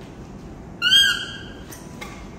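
A baby macaque giving one short, loud, high-pitched call about a second in.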